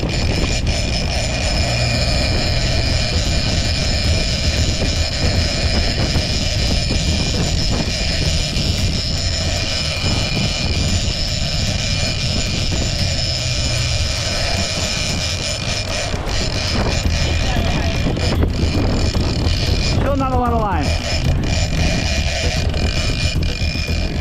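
Boat engine running steadily under wind and rushing water, while a big gold lever-drag reel is cranked hard to win back line on a bluefin tuna that nearly stripped the spool. A brief falling sweep sounds about twenty seconds in.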